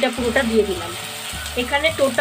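Ginger, garlic and green chilli paste sizzling steadily in hot mustard oil and fried onions in a frying pan.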